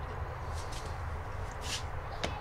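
Steady low outdoor rumble, with a few faint, short high hisses and no distinct event.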